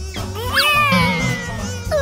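A high, squeaky cartoon character vocalisation that glides up and then down about half a second in, over background music with a steady bass.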